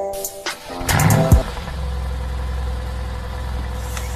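Mercedes-AMG GT's V8 engine started remotely from the key fob: it fires about a second in with a short rev, then settles into a steady idle.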